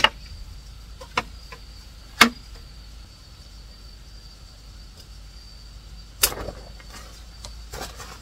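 A patio parasol being closed and folded: about five sharp clacks and knocks from its frame a few seconds apart, the loudest at the start and about two seconds in. A faint steady high insect trill runs underneath.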